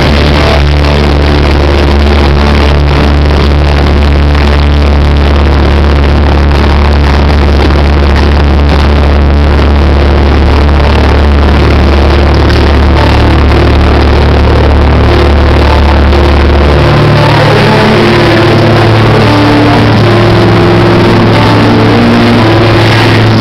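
A post-hardcore band plays live at high volume, with a deep low note held for most of the stretch that steps up higher near the end. The recording is overloaded and muffled, with the top end missing.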